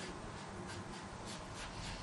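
Marker pen drawing short strokes on a whiteboard, a faint run of quick scratches.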